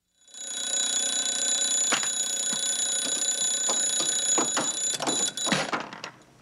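Twin-bell mechanical alarm clock ringing steadily, then stopping shortly before the end.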